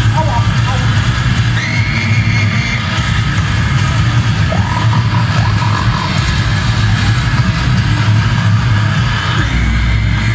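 Goregrind band playing live through a PA: heavily distorted guitars and bass over fast, dense drumming, with voices shouting over it a few times.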